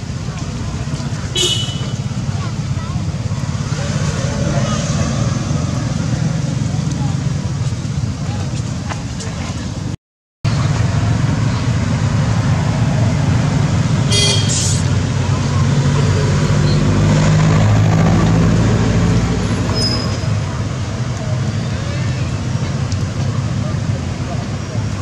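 Steady rumble of road traffic with vehicles passing, swelling to its loudest a little past the middle, under faint background voices. A brief high squeak comes about a second and a half in and another just past the middle, and the sound cuts out for a moment near the middle.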